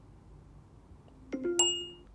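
A short electronic chime near the end: a soft low note followed by a brighter, ringing ding, marking that the spoken command was carried out.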